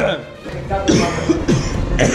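A man coughing, his throat burning from pepper gel that went down it.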